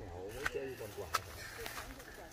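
Faint, distant voices of people talking, with a few sharp light clicks.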